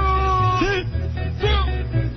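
Closing music for the radio show: a long held note that slides up at its start and down at its end, lasting about a second, over a steady bass, with a shorter sliding note near the end.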